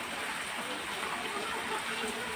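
Steady hiss of background noise with a faint voice murmuring underneath, too low to make out.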